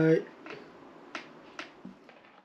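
A long, drawn-out spoken goodnight trails off, followed by faint room tone with a few small clicks.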